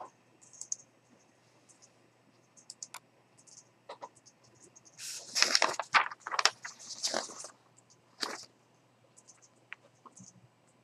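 Scattered faint computer mouse clicks, with a louder stretch of scratchy noise lasting about two and a half seconds about halfway through and another short burst just after.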